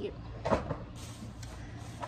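A cardboard product box set down with a single knock about half a second in, over a faint steady hum.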